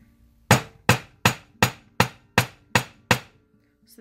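Eight even blows, about three a second, from the brass head of a brass-and-nylon jeweller's hammer on soft aluminum wire lying on a small five-pound anvil, each with a short metallic ring; the blows stop about a second before the end. The hammering flattens and spreads the wire.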